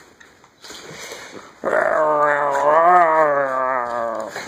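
A corgi growling in one long, loud, pitched growl of about two and a half seconds, rising slightly in pitch and falling back, while tugging on a rubber toy. Faint rustling comes before it.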